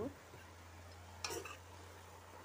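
A metal spatula scrapes and knocks once against a metal kadai, a little past a second in, as greens are stir-fried. A steady low hum runs underneath.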